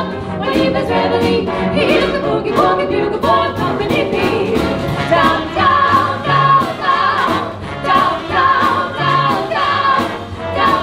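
Live big band playing a 1940s wartime song while a female vocal trio sings together, over upright bass, piano, brass, saxophones and a drum kit keeping an even swing beat.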